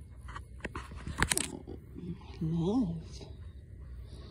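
Close handling noise of a hand and cat fur rubbing against the phone's microphone, with a sharp rustling clatter about a second in. A little past halfway comes a brief low vocal sound that rises and then falls in pitch.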